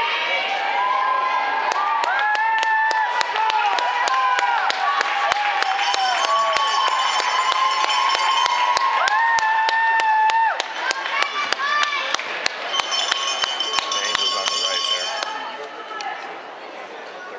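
Many girls' voices shouting and cheering over one another in high, held calls, with frequent sharp hand claps and slaps. The voices ease off a little about ten seconds in.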